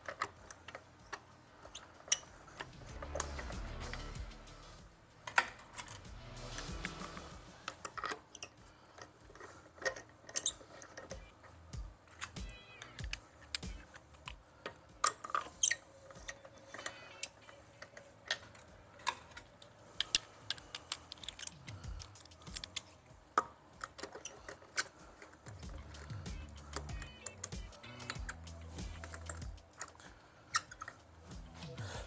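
Wheel bolts being threaded into an alloy wheel by hand: scattered sharp metallic clicks and clinks of the bolts against the wheel, over faint background music.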